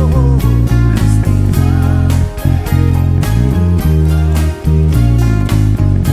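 Five-string fanned-fret Dingwall electric bass playing sustained, stepping low notes along with a live band recording, with drums keeping a steady beat and a higher guitar line about two seconds in.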